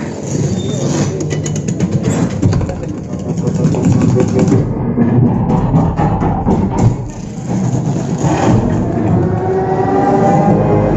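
A cinema sound system plays a Dolby Atmos demo trailer at high volume, heard in the auditorium. It carries dense, deep sound effects with rapid clicking strokes under music, dipping briefly about seven seconds in.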